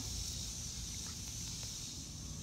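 Steady high drone of cicadas (called locusts) in the trees, with a low rustle of handling and a couple of faint ticks.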